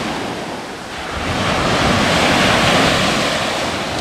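Sea surf breaking and washing up a sandy beach, swelling to its loudest a couple of seconds in and easing slightly toward the end, with wind rumbling on the microphone.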